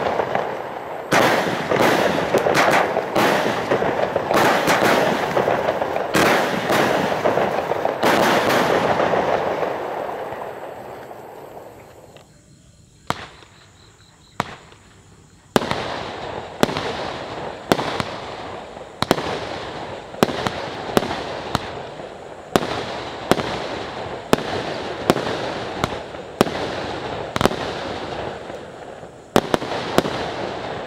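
A 16-shot 20 mm fireworks cake ("Gold-Blue", blue peony shells with gold effects) firing. For the first ten seconds the bursts overlap in a dense crackling wash that dies away about twelve seconds in. After a short lull, sharp shell bursts come about one a second until just before the end.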